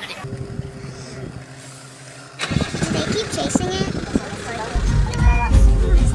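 A vehicle engine running with people talking over it. The sound gets louder about two and a half seconds in, and a deep rumble comes in near the end.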